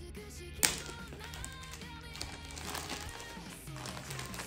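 Clear plastic wrapping being torn and peeled off a boxed CD set, with one sharp snap of the film about half a second in, then crinkling. Background music plays underneath.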